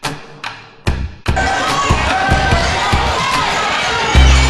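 Two deep drum hits, each ringing out. Then, from about a second in, the sound of a basketball game in a gym: crowd noise and shouting, with a ball bouncing on the floor.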